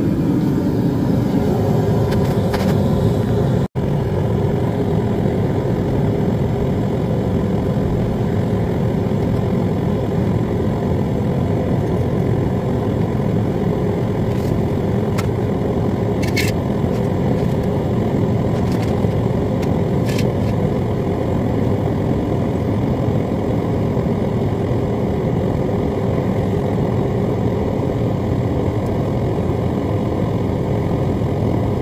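Propane-fired melting furnace running, its gas burner giving a steady, low rushing noise. The noise breaks off for an instant about four seconds in, and a few faint clicks come in the second half.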